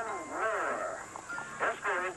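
A voice swooping widely up and down in pitch, mixed with music.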